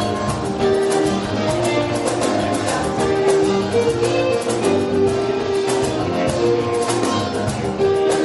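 Live acoustic guitar and violin playing a lively tune, the violin holding long melody notes over the guitar's steady rhythmic strumming.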